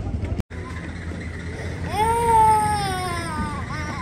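A young child's cry: one long wail nearly two seconds long, starting high and sliding slowly downward with a small upturn at the end, over steady background noise.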